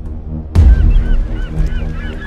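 Dramatic trailer score: a deep bass hit about half a second in over a sustained low drone, followed by a flurry of short chirping calls that rise and fall.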